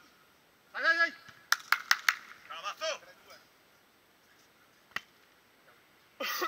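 Voices calling on a beach volleyball court, with a quick run of four sharp smacks about two seconds in and a single thump of the volleyball near the end.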